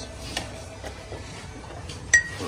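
Quiet handling of glassware and a metal tray on a table: one light tap about a third of a second in, over a steady low hum.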